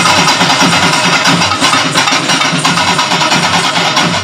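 Live folk drum ensemble of barrel drums and hand-held frame drums played together in a loud, fast, steady beat.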